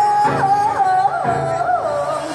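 Live female lead vocal singing an ornamented line over the band: a held note that breaks into a run of quick swoops up and down, then drifts lower.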